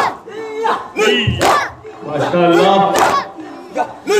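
Men chanting a noha (Shia lament) together, loud sung phrases with short breaks, punctuated by a few sharp slaps of matam chest-beating.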